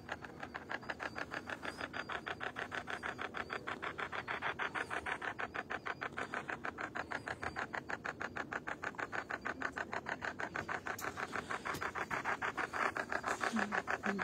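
A ghost-hunting sensor app on a phone gives out a fast, even train of pulses, about six a second, steady throughout.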